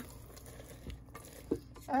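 A spatula folding walnuts into thick banana bread batter in a metal mixing bowl: faint stirring and scraping with a couple of soft knocks against the bowl.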